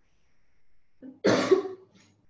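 A person coughs once, a short loud cough a little over a second in.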